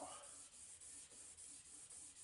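Faint rubbing of pencil graphite being blended on drawing paper, in quick repeated strokes.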